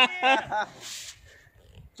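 A man's voice speaking briefly in the first half-second, then a short breathy hiss about a second in, then quiet.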